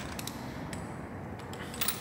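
A few faint, sparse clicks from a socket wrench working the cylinder-head bolts of a Land Rover 200 Tdi engine as they are loosened, with a small cluster near the end.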